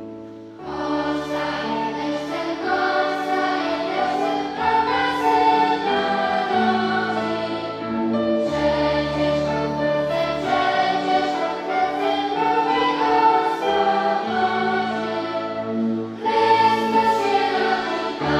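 Children's choir singing with an accompanying ensemble of flutes, violins and keyboard. The full group comes in about half a second in, after a few fading keyboard notes, and briefly pauses and comes back in near the end.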